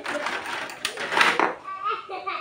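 Voices talking, a child's voice among them, with a few light handling clicks.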